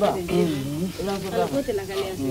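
Speech only: a person talking in Malinke.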